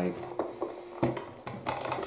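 A 3D-printed plastic attachment is pushed into the cutout of a cardboard filament box, making light clicks and scrapes as the box is handled, with a sharper click about a second in.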